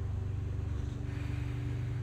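Steady low hum of a running ceiling fan's motor.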